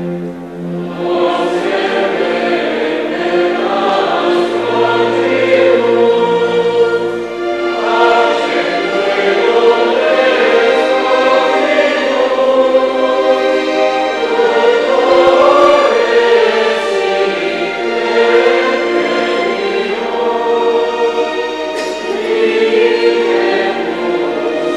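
Choir singing sacred music, with steady held low notes sounding beneath the voices.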